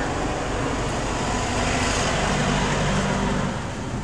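Engine hum and road noise from a slow-moving vehicle, heard from inside its cabin.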